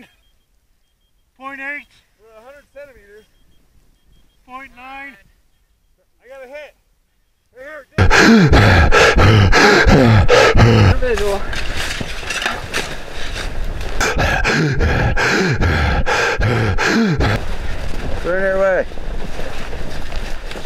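Short voice calls with gaps between them. Then, about eight seconds in, loud muffled thudding and scraping of shovels digging through the snow close above a buried microphone, with voices mixed in, in an avalanche-burial rescue.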